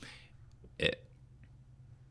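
A man's single short hesitation syllable, 'é', a little under a second in. Otherwise quiet room tone.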